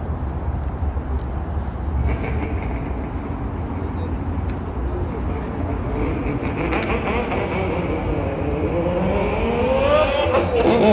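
A car engine accelerating, its note rising steadily in pitch over the last few seconds, over a steady low engine rumble.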